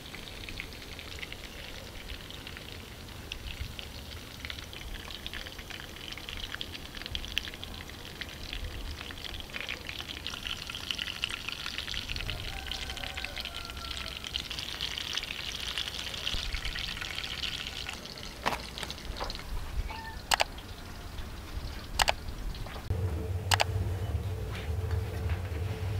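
Beef cutlets sizzling and crackling in hot oil in a frying pan, the sizzle swelling through the middle, followed by a few sharp clicks near the end.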